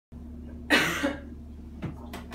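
A single loud cough a little under a second in, against a low steady hum in the room.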